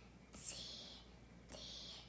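A child softly whispering letter names as she works through the alphabet, two hissy whispered sounds about a second apart.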